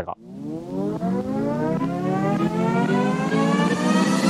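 A loud, slowly rising tone with many overtones, sweeping up steadily over about four seconds: an edited-in riser sound effect leading into music.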